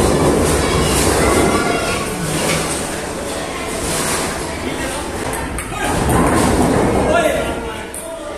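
Indistinct chatter of several voices in a large, echoing hall over a steady low rumble, with a couple of light knocks.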